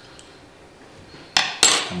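Metal teaspoon in a ceramic mug: faint stirring, then near the end a sharp clink followed by a louder, brief clatter as the spoon is tapped and set down on the hard varnished wooden counter.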